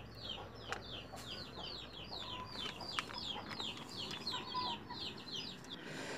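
Faint background chirping of birds: a steady run of short, high, falling chirps, about four or five a second, with a few soft clicks among them.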